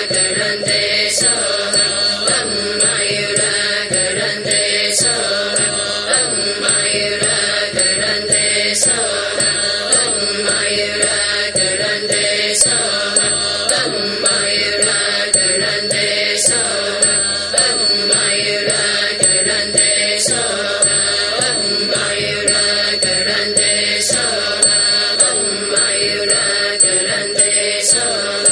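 Buddhist mantra chanting sung to a repeating melody, with a sharp percussion strike about every two seconds.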